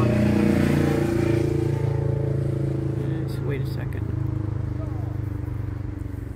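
An engine runs with a steady low hum, loudest in the first second or so and slowly fading.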